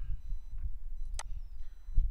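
A low steady hum of background noise with one sharp click a little past a second in.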